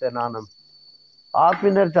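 A man speaking in Armenian in short phrases, with a pause of about a second in the middle. A faint, steady high-pitched whine runs unbroken underneath.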